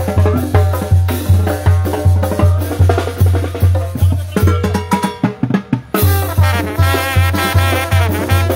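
Live Mexican banda music: sousaphone bass pulsing about twice a second under drums and brass. About four and a half seconds in the bass drops out for a moment, leaving only drum hits, and the full band comes back in about six seconds in.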